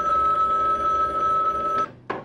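Corded desk telephone ringing: one long steady ring of about two seconds that cuts off suddenly.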